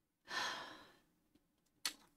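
A woman sighing: one breathy exhale that fades out over under a second, followed near the end by a single sharp click.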